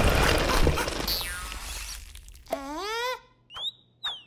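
Cartoon sound effects: a loud rumbling noise that fades away over the first two seconds, with a falling whistle-like glide, then a chick character's short squeaky vocal cry about two and a half seconds in, and a quick rising whistle near the end.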